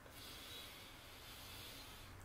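Faint steady hiss of rain falling outside, heard from inside a small room.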